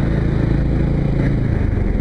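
Motorcycle engine running steadily while riding at road speed, mixed with wind and road noise.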